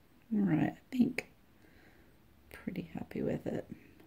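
A woman muttering softly under her breath: two short utterances, then a longer phrase near the end.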